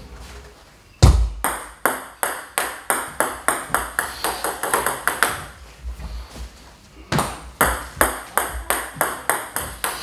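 Celluloid-plastic table tennis ball bouncing on a hard surface: a sharp first strike about a second in, then a string of light clicks coming quicker as the ball settles. A second run of bounces starts about seven seconds in.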